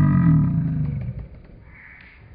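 A long, low, drawn-out hum-like tone, slowly falling in pitch and fading out about a second in, then a few faint clicks.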